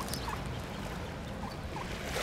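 A few brief calls from a mallard hen and her ducklings, short rising notes about three in two seconds, over a steady low rumble.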